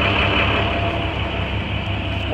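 International 4400's MaxxForce DT inline-six diesel idling steadily, a constant low hum.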